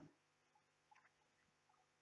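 Near silence: room tone, with a couple of very faint ticks about a second in.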